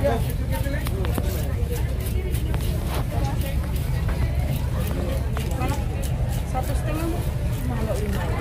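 Fish-market ambience: a steady low rumble under background chatter of voices, with a few sharp clicks of a knife against the wooden chopping block as a tuna is filleted.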